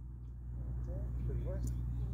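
Steady low rumble of outdoor background noise, with a few faint short rising calls about halfway through.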